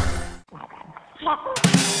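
Background music breaks off about half a second in. A short, quieter gap follows with a faint voice-like sound, then new music with a drum beat starts in near the end.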